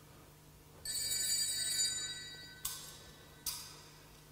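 Sanctus bells rung at the blessing with the Blessed Sacrament at Benediction: a shaken ring of several high bell tones for about a second, then two single strokes, each ringing away.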